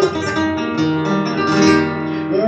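Flamenco guitar playing on its own: a short passage of plucked notes that ring on.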